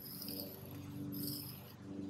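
Soft pastel stick scraping on rough asphalt, faintly, in two drawing strokes, one at the start and one a little past a second in, over a steady low hum.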